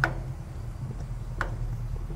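Gas grill's battery push-button spark igniter clicking: two sharp clicks about a second and a half apart, over a low steady hum.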